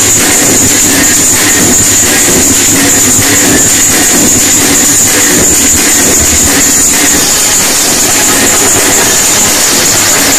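Loud trance/house music on a club sound system with crowd noise, recorded close to full scale so it comes through as a dense, steady, smeared wash with little clear beat.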